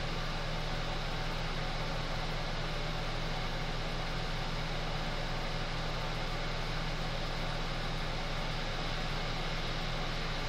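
Steady background hum and hiss, even and unchanging throughout.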